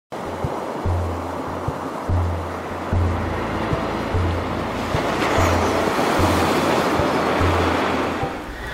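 Ocean surf washing in a steady hiss that swells slightly toward the end, with intro music of slow, held low bass notes underneath.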